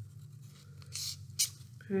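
Paper rustling twice briefly, about a second in and again just after, as a strip is rolled tightly around a drinking straw to make a stem, over a low steady hum.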